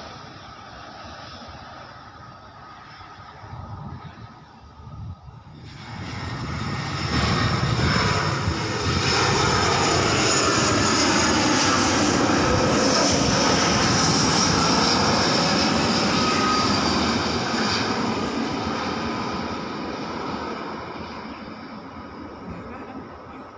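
Citilink Airbus A320 jet airliner passing low overhead on landing approach with its gear down. The engine noise builds from about six seconds in and holds loud for several seconds, with a high whine that drops slightly in pitch as the plane goes over. It then fades as the plane moves away.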